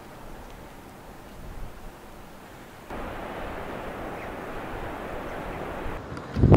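Wind blowing across the microphone: a steady rushing noise that grows louder about three seconds in.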